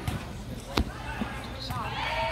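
A football kicked: one sharp thud a little under a second in, followed by a few lighter thuds, with players' voices calling across the pitch.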